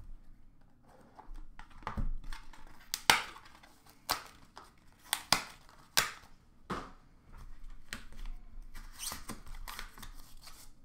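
Hands handling a trading-card box and its packaging: cardboard and plastic rustling with a series of short sharp clicks and taps, the sharpest about three seconds in.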